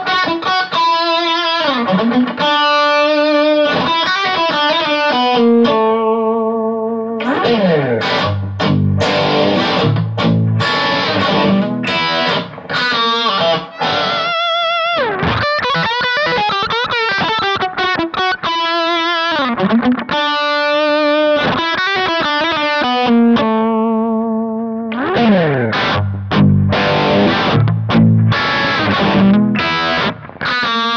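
ESP Phoenix II electric guitar played through a Kemper profile of a 1965 Fender Bassman (the 65 Lowman OCD+ profile, gain 5 of 10), recorded direct, in a really sweet overdriven tone. It plays a lead line of single notes with string bends and vibrato, mixed with riffs, and breaks off briefly about halfway through.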